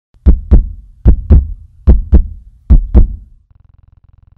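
Heartbeat sound effect: four double beats (lub-dub), each pair a little under a second after the last. A faint low hum starts near the end.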